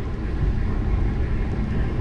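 Wind buffeting the microphone, a steady, uneven low rumble.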